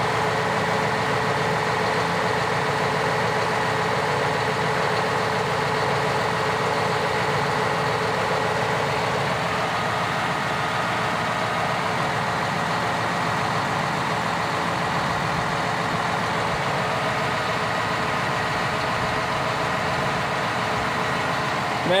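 John Deere 6150R tractor's six-cylinder diesel engine idling steadily, still cold, heard close at the rear of the tractor.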